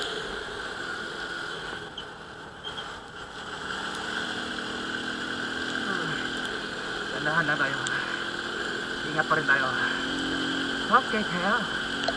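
Euro Rapido 110's small single-cylinder engine running at a steady cruise on a wet road, under wind and spray noise on a helmet-mounted microphone. A muffled voice comes in short bursts in the second half.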